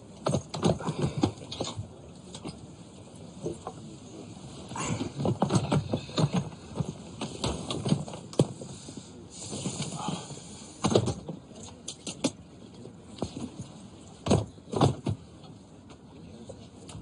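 Irregular thumps, knocks and rustling of bags being lifted and pushed into the overhead luggage racks of a train carriage, with the loudest knocks about eleven seconds in and again near the end.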